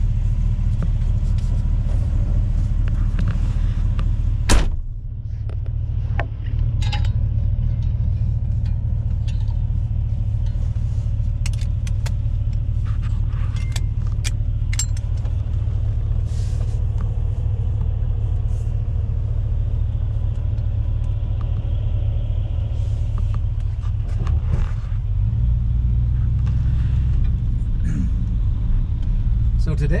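Interior sound of a 1967 Plymouth Fury III on the move: a steady low engine rumble with road noise, heard from inside the cabin. There is a sharp click about four and a half seconds in, and the rumble grows heavier about 25 seconds in.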